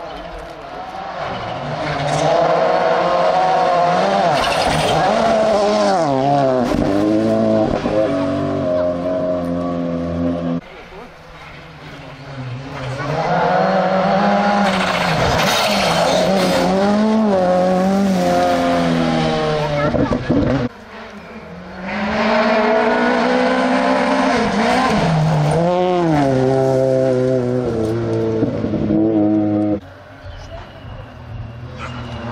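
Rally cars at full throttle on a gravel special stage, three passes cut one after another: in each the engine climbs in revs, dips in pitch through lifts and gear changes, and grows loud as the car goes by. The middle car is a Skoda Fabia rally car.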